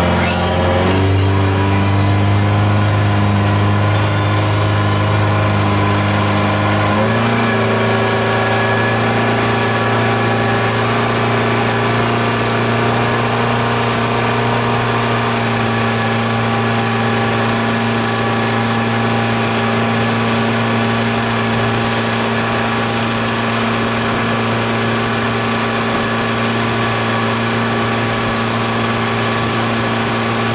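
Motorboat engine rising in pitch as it finishes accelerating, then running steadily under load while towing a tube. Its pitch steps up once about seven seconds in and holds there, over a steady hiss of wind and water.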